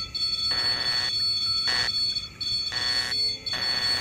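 Electronic alarm of a REM pod ghost-hunting sensor going off: a steady high-pitched tone with irregular bursts switching on and off.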